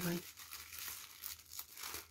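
Thin clear plastic packaging bag crinkling in faint, irregular crackles as it is handled and pulled open by hand.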